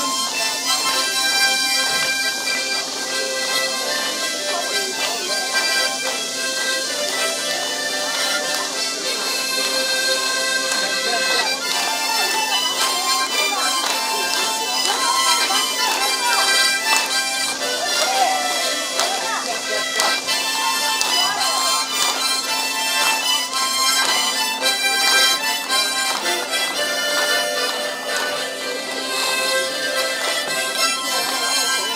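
Harmonica ensemble playing a slow tune together, many harmonicas sounding sustained chords and melody in a steady, continuous stream.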